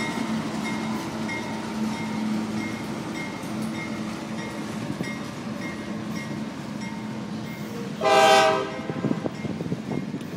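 CSX diesel freight locomotives running past with a steady engine drone and a regular click about twice a second from the wheels on the rails. About eight seconds in comes one short, loud horn blast.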